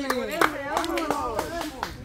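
Scattered hand claps, about a dozen at an irregular pace, over a group of people talking.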